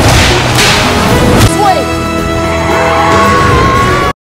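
Film trailer soundtrack: action music with brawl sound effects, crashes and impacts for the first second and a half. The music then changes to held notes, with a tone that rises slightly near the end.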